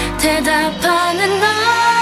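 K-pop song with female vocals singing over a pop backing track. The deep bass drops out a little under a second in, leaving the voices over lighter accompaniment with a long held note.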